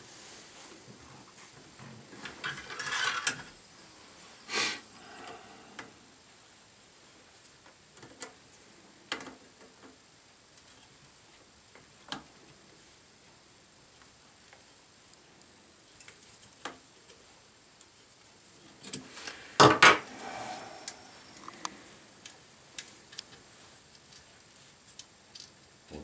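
Pliers working the metal nuts on the bolts of an antenna's terminal board: scattered small metallic clicks and taps as the nuts are turned, with a louder clatter of clicks about twenty seconds in.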